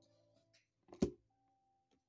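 A single sharp tap about a second in as a tarot card is laid down on the tabletop, with faint background music underneath.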